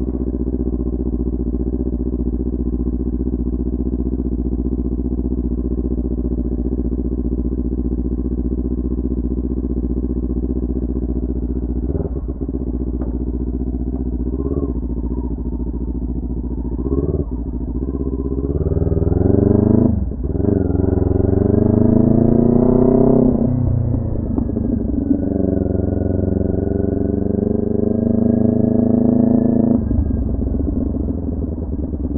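Kawasaki Ninja 400's parallel-twin engine running steadily at low revs, then pulling away. The revs climb with a sharp dip at a gear shift about twenty seconds in, climb again, and settle to a steadier lower pitch near the end.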